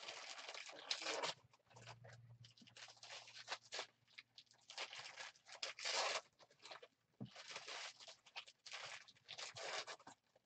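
Foil wrapper of a trading-card pack torn open and crinkled by hand: an irregular series of short crackling rustles, with a faint low hum underneath.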